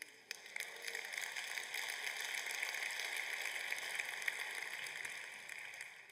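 Congregation applauding: a steady patter of many hands that builds within the first second, holds, and fades out near the end.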